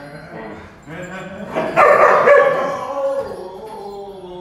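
Poodles vocalizing while they play, with one loud outburst about two seconds in that trails off in a falling tone.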